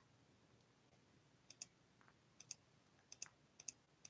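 Near silence with a few faint, short clicks scattered through the second half, some in quick pairs.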